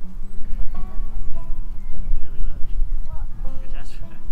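Rumbling, knocking handling noise from a camera harnessed on a dog's back as the dog moves across grass. It is heard under background music, with distant voices.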